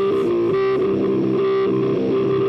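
Heavy stoner rock: an electric guitar playing a repeating riff through effects on its own, the drums and bass dropped out for a break.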